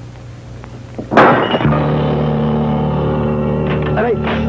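Dramatic film score: a sudden loud hit about a second in, then a steady held low chord.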